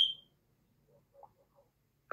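A single short, high-pitched electronic beep right at the start, then near silence.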